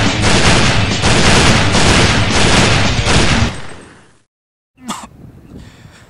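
Loud, sustained rapid gunfire like a machine-gun burst, lasting about three and a half seconds and then fading away. About a second later comes one short, sharp report, then low background noise.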